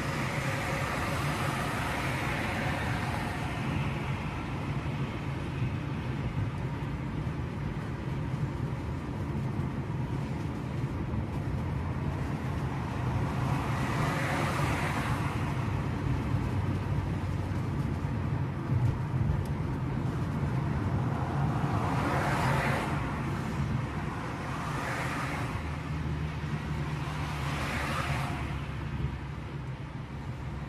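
Steady low engine and road noise from inside a car driving through town traffic. Other vehicles swell past several times, most strongly about three-quarters of the way through.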